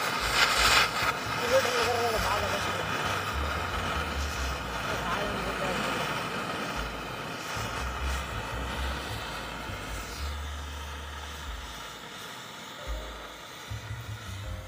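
Acetylene gas, made from calcium carbide and water, burning as a small jet flame at the tip of an infusion needle with a steady hiss that eases off in the last few seconds. Wind rumbles on the microphone now and then.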